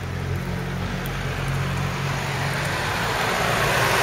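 A car approaching along the road, its tyre and engine noise growing steadily louder as it comes close. A steady low hum runs underneath.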